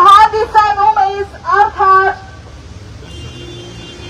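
Protesters' raised voices, loud and sing-song, for about two seconds, then breaking off. Quieter street noise with a low steady hum follows.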